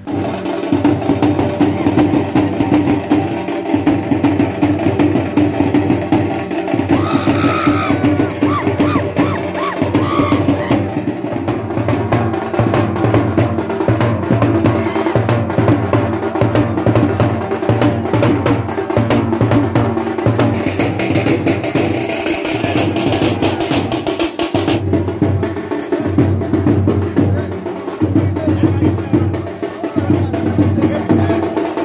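A street drum troupe beating large steel-shelled drums with sticks in a fast, driving rhythm of dense, sharp strikes.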